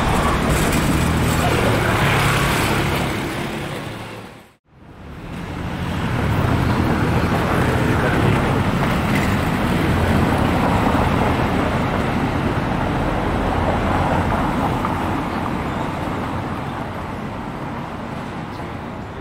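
Steady outdoor ambient noise, like traffic, that fades out to near silence about four and a half seconds in and then fades back up.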